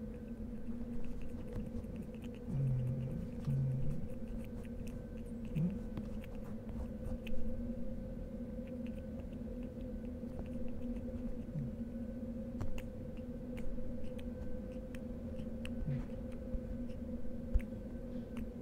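A steady low hum with scattered small clicks and a few short low tones near the start.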